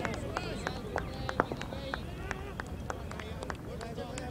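Distant voices of players calling across an open cricket field over a low rumble, with a scattered string of sharp clicks, the loudest about one and a half seconds in.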